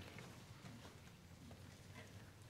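Near silence in a quiet church: a steady low hum with a few faint footsteps and light knocks as a person walks up to the altar.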